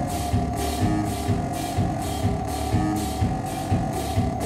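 A live band playing: drum kit hits under a steady held synthesizer drone, with a hissing electronic pulse repeating a little over twice a second.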